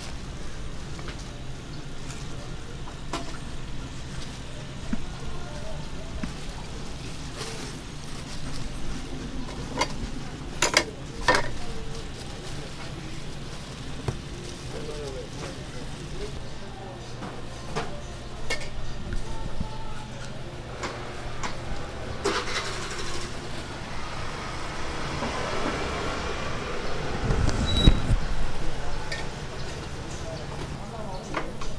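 Busy market ambience: background voices over a steady low hum, with a few sharp knocks of handling about ten and eleven seconds in and a low rumble near the end.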